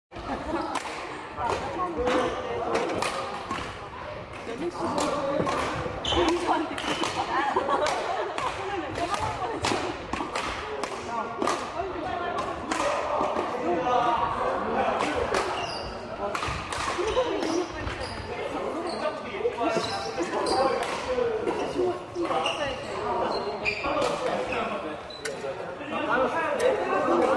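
Badminton rackets hitting shuttlecocks in rapid rallies, sharp cracks every fraction of a second from several courts, echoing in a large sports hall, over players' background voices.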